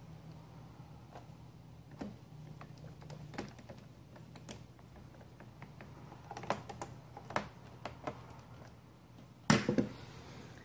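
Scattered small clicks and ticks of a hand screwdriver working screws into a Roomba's plastic bottom cover, with a louder clatter about nine and a half seconds in as the screwdriver is set down on the wooden table.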